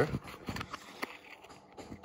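Faint handling noise: a few soft knocks and rustles in the first second as a phone camera and a small plastic container are moved about, then quieter.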